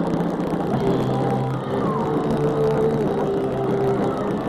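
Live rock band playing loud: distorted electric guitar and bass holding sustained notes that shift pitch a couple of times.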